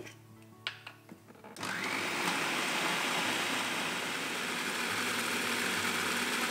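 An electric food processor starts about a second and a half in and runs steadily, chopping leafy greens and oil into pesto. A couple of light clicks come just before it starts.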